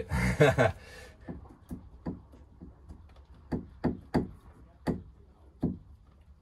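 A brief laugh, then irregular sharp knocks and taps, about nine in five seconds, as a plastic drain plug and its pipe are fumbled against a caravan's underfloor fresh water tank while being pushed back into their location hole.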